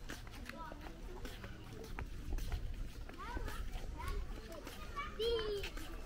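Faint, indistinct chatter of people and children, with a stronger voice about five seconds in, over a low rumble that swells in the middle.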